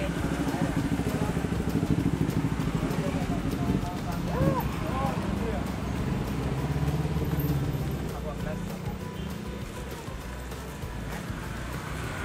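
A road vehicle's engine running, loudest through the first eight seconds and then fading, with a brief voice about four and a half seconds in.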